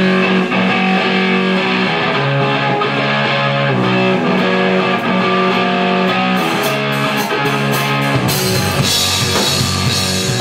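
Live rock band opening a song with an instrumental intro: electric guitar chords ring out over bass, with drum hits coming in past the middle and the full band with drums kicking in about eight seconds in.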